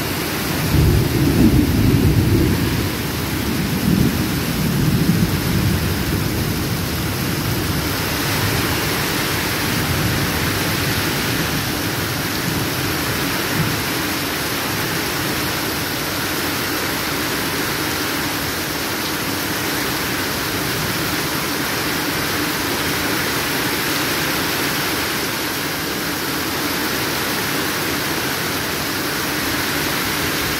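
Heavy rain pouring down steadily as a dense, even hiss. A low rumble stands out in the first few seconds, then eases.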